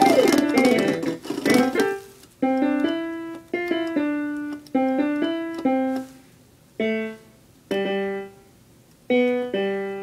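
Electronic keyboard on a piano voice: a quick, dense flurry of notes, then a slow melody of single notes and two-note chords, each struck sharply and left to fade, with short pauses between phrases.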